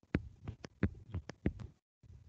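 Stylus tapping and sliding on a drawing tablet as dots and letters are handwritten: about ten sharp, unevenly spaced taps in two seconds, each with a dull thud.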